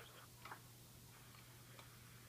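Near silence from a police scanner's speaker in a gap in radio speech: a faint steady low hum and hiss, with two faint ticks about half a second in and near the end.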